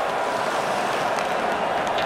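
Steady din of a large stadium crowd at an ice hockey game: an even wash of noise with no single event standing out.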